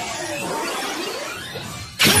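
Electronic backing music of a rap song tailing off between lines, with a few faint sliding tones, growing quieter toward the end.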